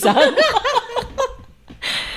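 Women laughing, a quick run of ha-ha pulses that fades out about a second and a half in.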